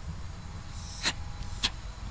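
A short hiss of leftover gas pressure escaping at a refrigerant recovery tank's hose fitting, followed by two sharp clicks of the fittings being handled, over a low steady rumble.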